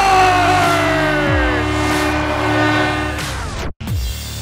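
Arena goal horn sounding after a goal, with a siren tone winding down in pitch over its steady note, under a backing music track. It cuts off abruptly near the end.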